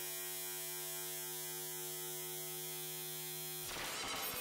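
Sustained buzzy synthesizer drone held on one low pitch, part of a psychedelic electronic track. About three and a half seconds in it cuts to a dense, noisy texture with fast stuttering pulses.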